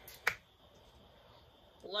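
A single sharp click about a quarter of a second in, then quiet.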